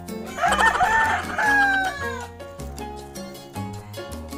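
A rooster crowing once, a call of about a second and a half that rises, holds and falls away, over background music with a steady beat.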